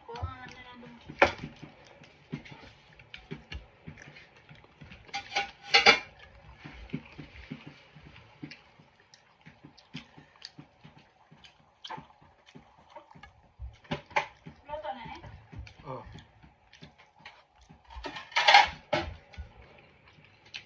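Someone eating with bare hands from a ceramic plate: chewing and mouth sounds with many small clicks and taps of fingers and food on the plate. There are three louder bursts: about a second in, about six seconds in, and near the end.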